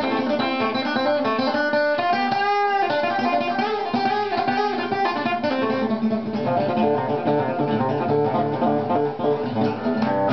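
Steel-string acoustic guitar playing a continuous phrase of plucked single notes and chords in D minor, ringing against the open fourth and fifth strings, with one note held and wavering about two and a half seconds in.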